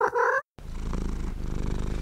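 A cat gives a short meow, then purrs steadily.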